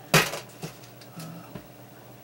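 A short burst of rustling handling noise, followed by two faint clicks and a brief low hum from the man's voice.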